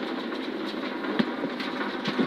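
Steady engine and tyre noise heard from inside the cabin of a Subaru Impreza N4 rally car at speed on a wet road, with a few light clicks.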